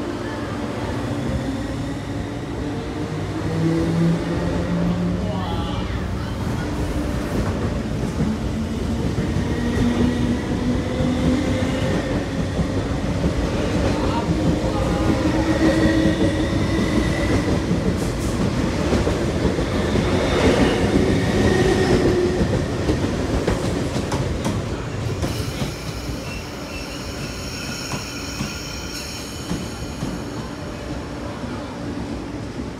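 East Rail line electric multiple-unit train running past close by along the platform as it pulls away, its motor whine rising in pitch in several steps as it speeds up, over a steady rumble of wheels on track. The sound fades a little near the end as the train draws off.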